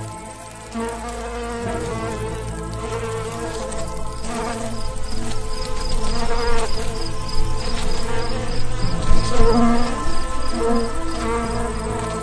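Buzzing wings of a swarm of flying ladybugs, a cartoon sound effect with many overlapping wavering buzzes, swelling louder in the middle and easing off near the end.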